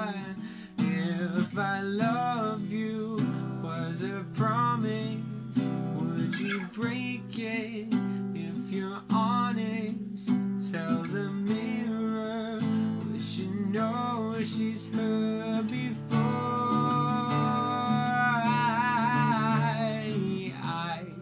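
A Taylor acoustic guitar strummed with a man singing along, holding long notes with vibrato.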